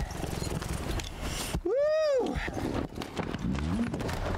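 A single whooping "woo!" from a person's voice about two seconds in. It rises and then falls in pitch over half a second or so, above the steady noise of the film's soundtrack.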